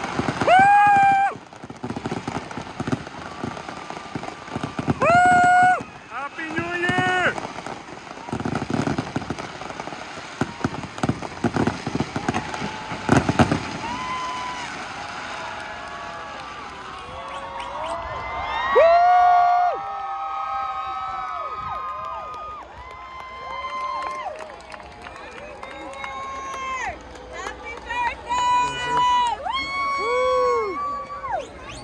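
Fireworks crackling and banging for the first half, with a last loud bang just before they stop, while people whoop and cheer over them. After the fireworks end, the crowd keeps shouting and cheering.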